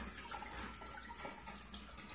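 Faint, steady trickle of water from an aquarium filter, over a low steady hum.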